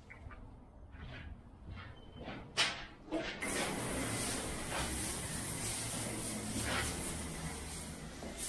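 A soft-wash spray wand starts spraying a dilute bleach post-treatment onto brick pavers about three seconds in, a steady hiss of spray that keeps going. A few brief, faint sounds come before it.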